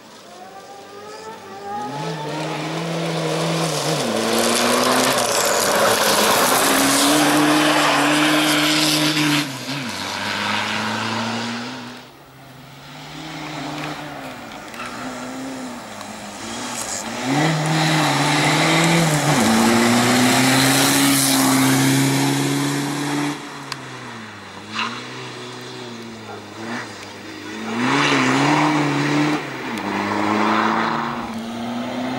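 Volkswagen Fun Cup race car's engine revving hard through a cone slalom, held at high revs in three long loud stretches with the revs dipping and rising again between them as the driver lifts and blips the throttle, with tyre squeal.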